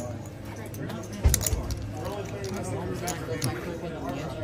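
Cards and chips being handled on a casino table: a few sharp clacks, the loudest with a soft thump just over a second in, over a babble of voices.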